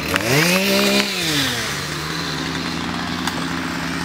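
Two-stroke chainsaw revving up sharply in the first half second, then running steadily at a slightly lower pitch while cutting brush.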